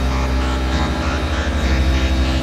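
Experimental electronic synthesizer drone: a dense stack of steady low tones, with a rapid flutter coming into the bass less than a second in, under a noisy upper layer.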